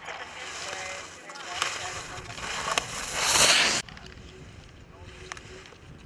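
Ski edges scraping and hissing on hard snow as slalom skiers carve past close by, loudest in a rush of scraping about three seconds in that cuts off suddenly, with a few sharp clacks.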